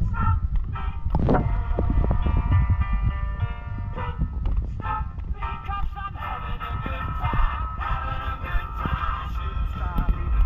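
Music playing for a fireworks display, with fireworks going off under it: repeated bangs and thumps, a sharp one about a second in.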